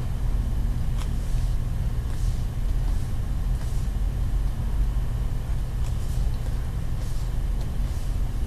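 A steady low background hum, with a few faint soft scratches of a stylus writing on a tablet.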